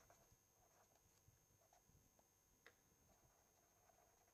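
Near silence, with a few faint ticks of a pen on paper as a word is handwritten; the clearest comes about two-thirds of the way in.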